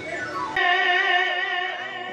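A man singing a long, held aalap note into a microphone over a PA, with a slight waver in the pitch. About half a second in, it cuts in abruptly after a short falling glide.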